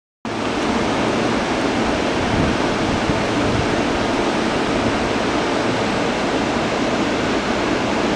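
Steady, even noise from a JR East E233-7000 series electric train standing at the platform, its air-conditioning and equipment fans running.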